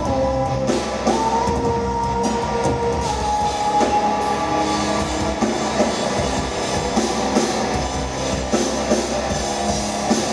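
Live metal band playing: electric guitar and drum kit, with long held high notes through the first half.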